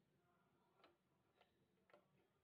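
Near silence with three faint ticks, about half a second apart.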